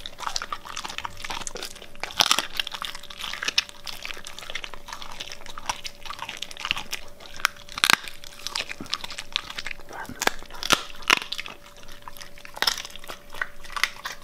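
Siberian husky chewing raw chicken: irregular wet chewing with sharp crunches, several loud ones spread through, over a faint steady hum.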